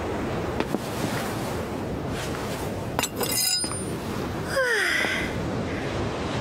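A ring-handled metal stiletto clinks and rings on a hard floor about three seconds in, over a steady rush of wind. A short falling tone follows a moment later.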